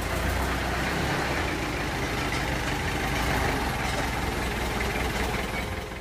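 A small truck's engine idling steadily, a low hum under a rough, even rattle.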